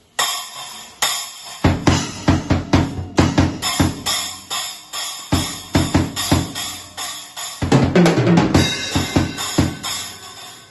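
Drum kit being played: a cymbal crash at the start and about a second in, then a steady beat of bass drum and snare under ringing cymbals, with a busier fill of drum hits near the end.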